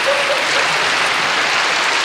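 Audience applauding steadily after a comedy punchline.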